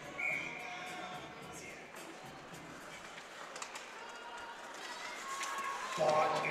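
Ice rink ambience: faint music over the arena's sound system, with a few sharp clacks of sticks and puck on the ice as play restarts from a faceoff.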